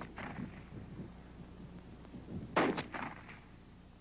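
M2 carbine firing single semi-automatic shots, one per trigger pull: one shot right at the start and another about two and a half seconds in, each with a short echo. A steady low hum runs underneath.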